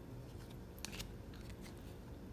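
Faint handling of rigid plastic toploader card holders, slid against each other, with a few light clicks, the sharpest about a second in.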